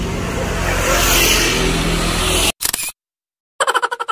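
Steady outdoor street noise with traffic, cut off abruptly about two and a half seconds in by a short edited-in sound effect. Near the end a rapid pulsing sound effect, about nine pulses a second, begins.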